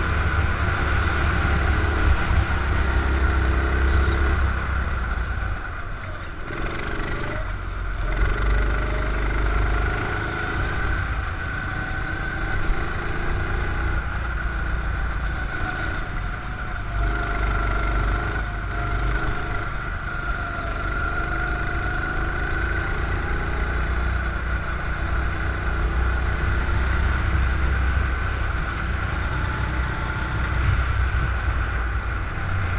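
Go-kart engine heard from on board the kart through a lap, its note rising on the straights and falling back as it slows for corners, with a marked drop in level about six seconds in before it picks up again.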